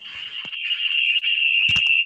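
A steady high-pitched whine that grows louder and cuts off suddenly at the end, with a click about halfway through and two more near the end.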